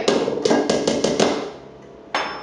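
A spoon beating softened butter and sugar in a mixing bowl: a quick run of taps and knocks against the bowl, fading out about a second and a half in.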